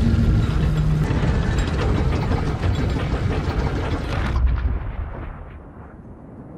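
Film sound effect of enormous stone maze doors grinding shut: a loud, continuous rumble full of rattling and crunching. It thins out and fades away from about four and a half seconds in.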